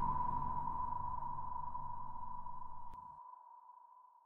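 The fading tail of a logo-intro sound effect: a single steady ringing tone slowly dying away over a low rumble, which stops about three seconds in.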